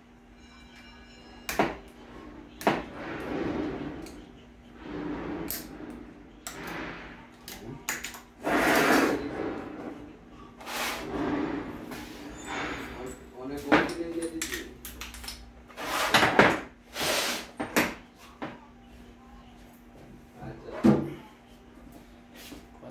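Workshop handling noise: scattered clicks and knocks of tools and transmission parts being handled and set down on a metal workbench, with shuffling between them and a steady low hum underneath.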